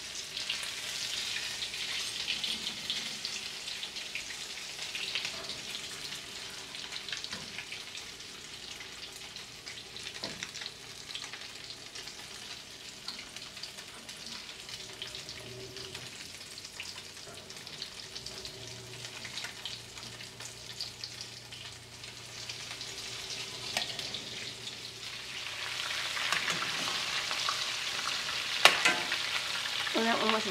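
Crumb-coated French toast frying in hot fat in a cast-iron skillet: a steady sizzle that swells louder near the end, with a sharp knock shortly before the end.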